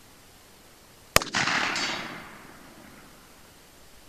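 A single shot from a Smith & Wesson 686 .357 Magnum revolver firing a 180-grain Hornady HP-XTP load: a sharp crack about a second in, followed by a report that fades over about a second and a half.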